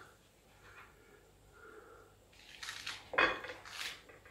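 Serving spoon scraping and knocking in a nonstick frying pan as hake and prawns in sauce are dished up. It is quiet at first, then a few short scrapes come in the last second and a half, the strongest a little past the middle.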